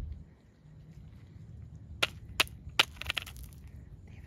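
Dry twigs and leaf litter snapping and crackling: three sharp snaps about half a second apart around halfway in, then a quick run of crackles.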